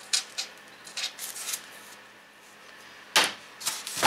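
A blade drawn in short scraping strokes along the edge of a foil-faced rigid foam insulation board, scoring it. Near the end come two louder scrapes and knocks as the board is handled.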